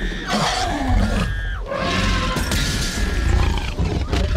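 Film sound effects of a Tyrannosaurus rex roaring as it attacks a jeep, with children screaming in short high held cries over a heavy low rumble and rain.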